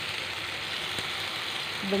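Bacon-wrapped rice rolls frying in oil in a stainless steel pan: a steady sizzle.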